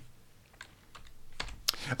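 A few light computer-keyboard clicks, mostly close together in the second half, as the presentation is advanced to the next slide.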